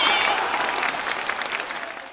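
Recorded applause, many hands clapping as a crowd, fading out steadily to the end of the soundtrack.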